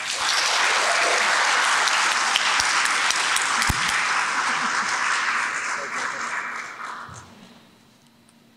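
Audience applauding: a steady spell of clapping that dies away near the end.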